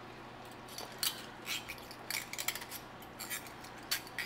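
Metal wire whisk clinking and scraping against a cast iron skillet as it breaks up cold cream cheese among cooked mushrooms and bacon: light, irregular clicks a few times a second, starting about half a second in.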